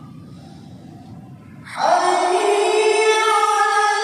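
Low murmur of a large seated congregation in a big hall, then, about two seconds in, a chanted call to prayer (adhan) starts loudly over the mosque loudspeakers: one voice holding a long, steady sung note with strong echo.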